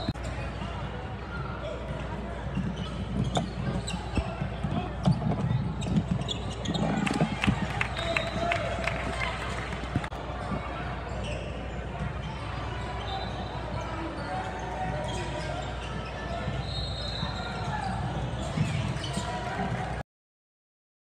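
Basketball game on a hardwood court: a ball bouncing repeatedly as it is dribbled, with players' running steps and voices calling out in the background of a large, echoing gym.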